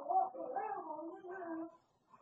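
A high voice in drawn-out, sing-song tones, stopping shortly before the end.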